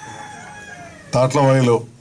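A rooster crowing faintly in the background, its long call slowly falling in pitch over about the first second, followed by a short, louder burst of a man's voice through a microphone.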